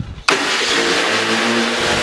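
Pressure washer starting abruptly about a quarter second in and then running steadily: a loud hissing spray over a steady motor hum.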